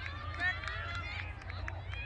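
Distant voices of children shouting and calling out across an open playing field, with a few short clicks and a steady low rumble underneath.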